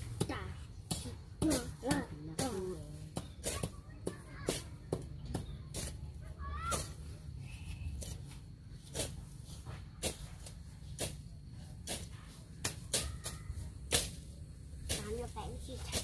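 Irregular sharp chops and scrapes of a long-handled hand tool cutting weeds and grass, one to three strikes a second, over a steady low rumble. Brief voices come in now and then.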